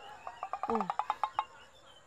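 Insect chirping: a rapid, even run of short pulses, about seven a second, fading out about a second and a half in, under a brief spoken 'ừ'.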